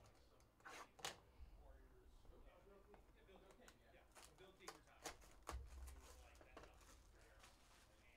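Faint handling of a cardboard trading-card hobby box as it is opened: scrapes and several sharp clicks. There is a low thump about one and a half seconds in and another about five and a half seconds in.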